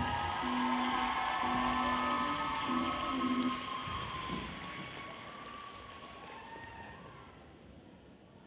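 Spectators applauding, with a few held notes of music over it in the first few seconds; the sound dies away to near quiet by the end.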